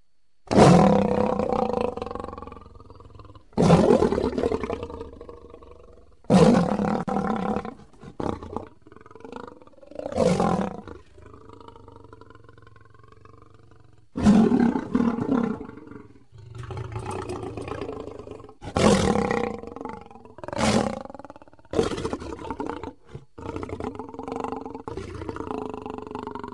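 Custom-made Tyrannosaurus rex roar sound effects: a series of loud roars, each starting suddenly and fading over a second or two, with shorter, quieter growls between them.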